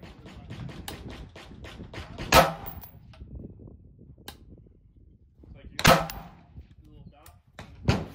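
An Anderson Manufacturing AM15 Utility Pro AR-15 rifle in 5.56 firing single, spaced shots: two sharp reports about three and a half seconds apart, and another right at the very end.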